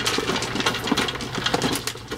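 Gravel or small stones pouring out of a plastic tub around the base of a ceramic pot, a dense, irregular rattle of many small clicks.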